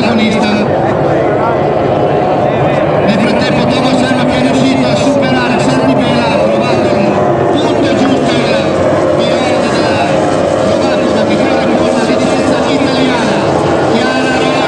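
Outboard engines of Formula 2 racing powerboats running at race speed, a loud continuous drone whose pitch wavers as the boats pass.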